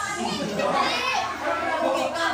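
Children and adults chattering over one another in a small crowded room, with a child's high-pitched voice standing out about half a second in.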